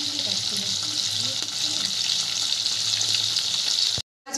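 Pieces of fish frying in hot oil in a wok: a steady sizzle with fine crackling pops, cutting off abruptly at the end.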